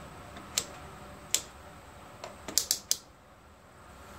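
A few sharp plastic clicks from a handheld digital multimeter's rotary selector dial being turned through its detents: single clicks about half a second and over a second in, then a quick run of about four near the end.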